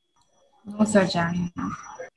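Speech only: after a short silence, a man's voice says a brief phrase starting about half a second in.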